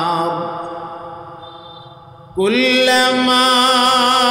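A man chanting in long held notes: one note dies away over about two seconds, then a new, higher note starts abruptly about two and a half seconds in and is held steady.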